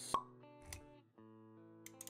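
Intro music of held notes, with a sharp pop just after the start and a softer low thud a moment later: sound effects of an animated title sequence.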